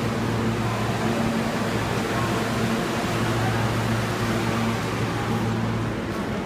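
Steady low hum and air-conditioning noise of an R160A subway train standing in the station.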